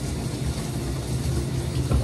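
Shower running behind the curtain: a steady low rumble with an even hiss of falling water.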